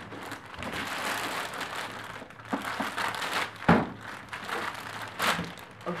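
Clear plastic wrapping crinkling and rustling as it is pulled off a projector, with two louder, sharper rustles later on.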